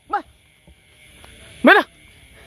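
A dog barking twice: a short, fainter bark just after the start and a louder one near the end.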